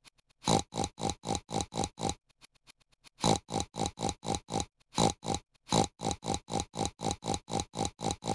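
Cartoon pig character oinking over and over, short identical oinks about four a second, with one pause of about a second near the two-second mark.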